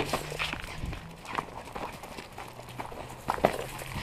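Quick, irregular running footsteps and scuffs on a brick patio, with a sharper knock at the start and another near the end.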